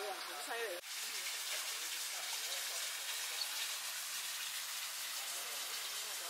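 Outdoor ambience: faint voices in the first second, a sudden break just before one second in, then a steady even hiss.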